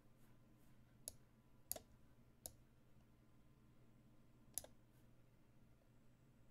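Faint sharp clicks of moves being played in an online chess game on a computer: four clear clicks spread over several seconds, with a few fainter ones between.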